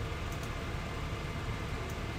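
Steady background hiss with a low hum, room tone from the recording setup, and a couple of faint ticks.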